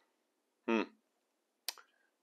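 A single sharp click near the end as the just-removed carburetor float bowl is handled. The rest is near silence.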